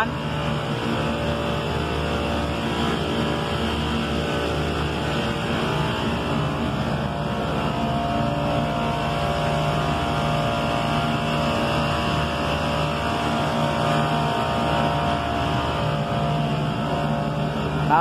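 Two newly replaced refrigeration compressors in an air-handling unit running together with a steady hum made of several even tones. Both compressors are running normally.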